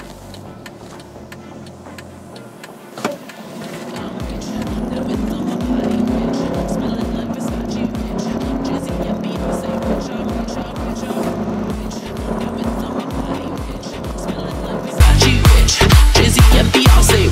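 Mercedes-Benz E220 CDI's four-cylinder diesel heard from inside the cabin, pulling hard under full acceleration from about four seconds in. Electronic dance music with a steady beat plays underneath and turns much louder near the end.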